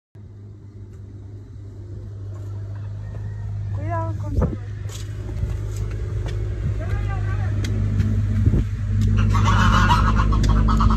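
Horse's hooves striking the ground as it is led out walking, irregular knocks that grow denser and louder near the end as it reaches the concrete, over a steady low hum.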